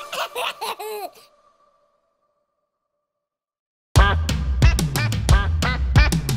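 A cartoon baby giggling briefly, then about two and a half seconds of silence. Bouncy children's-song music with a strong steady beat starts suddenly about four seconds in.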